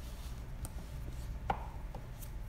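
Light handling noises of books being moved on a bookshelf: a few soft knocks and rubs, the clearest knock about one and a half seconds in, over faint room hum.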